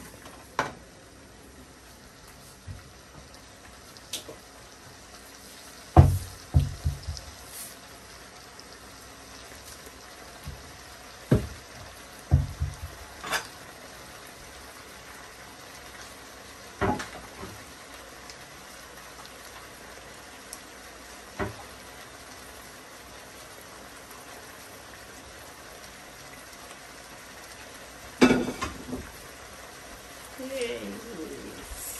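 Beef with tomato, onion and green pepper sizzling quietly in a pot, with scattered knocks and scrapes of a wooden spatula against the pot, the loudest about six seconds in and another near the end.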